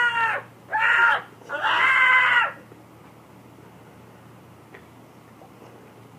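A teenage boy's voice yelling 'ah' in drawn-out cries: one trailing off just after the start, then two more, the last about a second long, each dropping in pitch as it ends.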